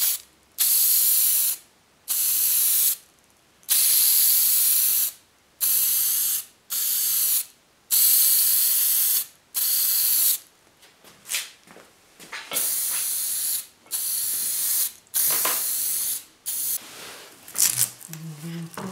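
Aerosol spray can spraying black paint onto wooden parts in about a dozen separate bursts of roughly a second each, with short pauses between them.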